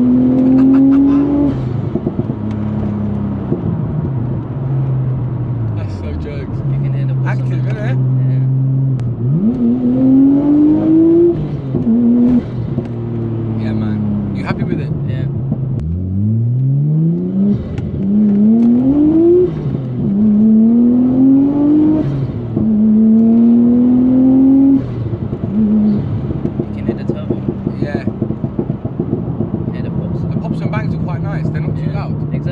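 Nissan Skyline R34 Tommy Kaira's turbocharged straight-six, heard from inside the cabin, accelerating through the gears. The pitch climbs and drops several times, most often in the second half.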